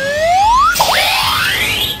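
Rising whistle-like sound effects: one tone climbs steadily and breaks off about three-quarters of a second in, then a second, brighter tone sweeps up fast over a hiss.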